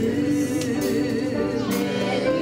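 A man and a woman singing a gospel song together, holding long notes.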